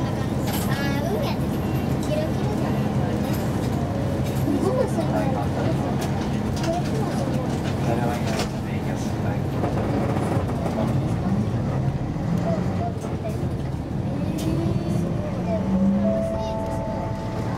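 Inside a city bus cabin: the bus's engine runs with a steady low drone while passengers talk quietly in the background.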